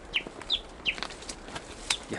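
A bird calling three short, quick notes that each fall in pitch, about a third of a second apart, followed by a few sharp clicks.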